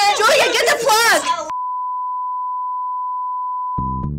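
Raised voices for the first second and a half, cut off abruptly by a steady, single-pitched reference test tone of the kind played with colour bars. The tone holds for about two and a half seconds and stops abruptly as upbeat music comes in.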